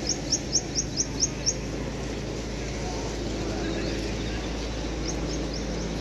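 A small bird chirping a quick run of about eight short, high notes, a little more than four a second, in the first second and a half, and a few more near the end, over a steady background hum of outdoor noise.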